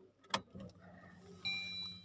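Ignition of a Maruti Suzuki Swift switched on: a single click, a faint low hum, then a steady high electronic beep from the instrument cluster starting about one and a half seconds in.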